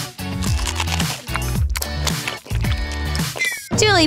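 Upbeat background music with a steady beat.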